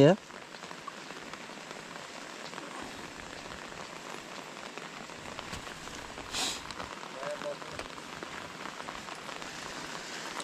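Steady rain falling on lake water and the leaves around it: an even hiss. A brief, louder scratchy noise comes about six seconds in.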